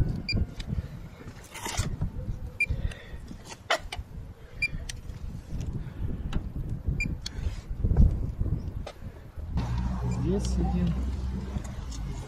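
Handheld paint thickness gauge giving a short high beep each time it takes a reading on the car's paint, four beeps a couple of seconds apart. Handling knocks and low rumble on the microphone throughout, with a steadier low rumble near the end.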